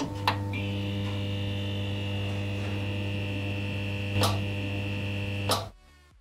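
Neon-sign electric buzz sound effect: a steady mains hum with a thin high whine. It switches on with a crackle, crackles again about four seconds in, and cuts off with a last crackle near the end as the sign goes dark.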